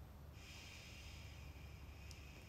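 A long, soft breath through the nose, a faint hiss that begins about a third of a second in and carries on, over a low steady room hum.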